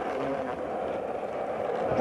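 Skateboard wheels rolling over pavement, a steady rumble.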